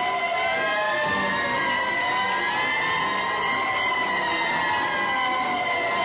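Several police motorcycle sirens wailing, their pitches rising and falling out of step so the wails overlap throughout.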